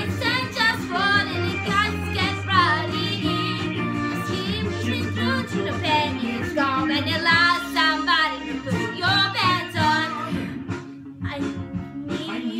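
A young woman singing a musical-theatre song into a handheld microphone over a steady instrumental backing track, with vibrato on held notes; the voice drops out briefly near the end.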